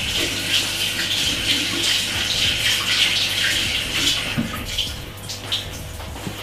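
Water running from a kitchen tap, a steady rushing hiss that tails off after about four and a half seconds.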